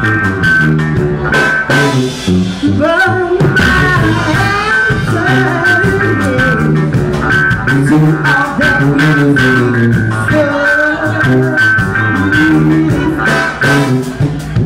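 Live brass-and-funk band playing loud: trombone, sousaphone, drum kit and guitar in a steady groove.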